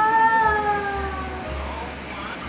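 A single long sung note in background music, held for about a second and a half and then sliding slowly down in pitch before it fades.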